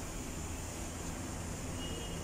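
Steady low background hum and hiss in a workshop, with no distinct events.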